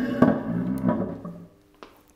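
A man's voice drawing out a hesitation sound, which fades over about a second and a half, then a faint click with a brief ring near the end.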